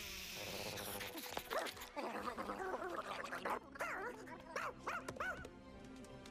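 A cartoon dog's voice giving a run of short barks and yips over background music.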